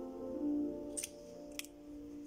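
Soft background piano music with held notes, and two sharp clicks about a second in and half a second apart, from a plastic lipstick tube being handled.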